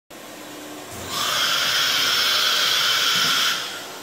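CNC router with an automatic tool changer: a loud, high-pitched hissing whine starts about a second in and fades after about two and a half seconds, as the machine shuts down and takes the tool out of the spindle.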